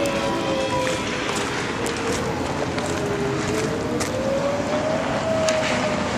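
A running vehicle: steady road and engine noise under a humming tone that slowly dips and then rises in pitch.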